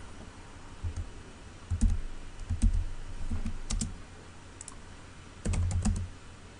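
Computer keyboard keystrokes, entering dimensions for a box being drawn in CAD software: separate clicks with dull thumps, spaced irregularly, with a quick run of several keys near the end.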